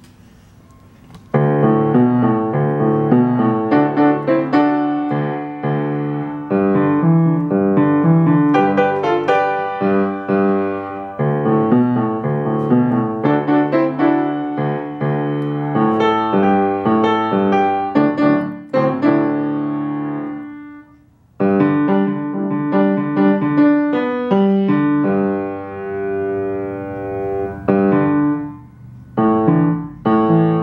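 Acoustic grand piano played fast: a lively piece of quick, densely packed notes that starts about a second in and breaks off briefly about two-thirds of the way through before going on.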